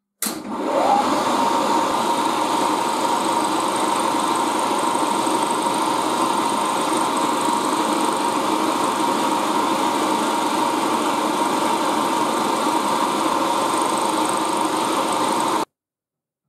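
Milling machine running with a small end mill cutting into a steel bolt held in a collet: a steady whine over a machining hiss. It cuts off suddenly near the end.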